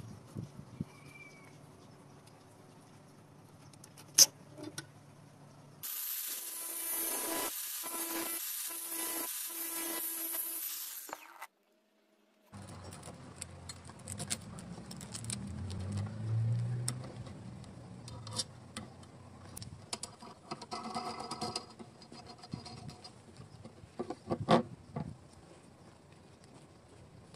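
Small steel hardware being handled and fitted together: a ball bearing, nuts and washers clinking on a threaded rod, with a sharp click about four seconds in and another cluster near the end. A steady hiss runs for several seconds in the middle.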